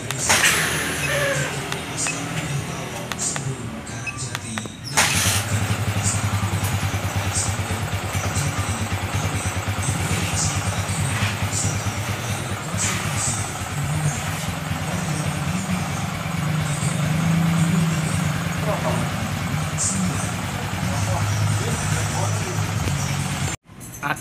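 A steady engine idle with a low, evenly pulsing hum starts abruptly about five seconds in and cuts off sharply near the end, with a few clicks and knocks of handling before it.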